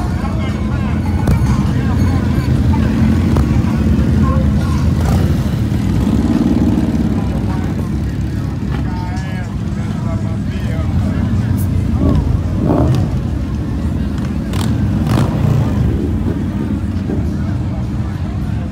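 Motorcycle engines running in slow street traffic, a steady low rumble, with people talking in the crowd around them.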